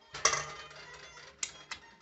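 A metal spoon clinking and scraping against a stainless steel mixing bowl: a clatter just after the start that dies away, then two short sharp clicks about a second later.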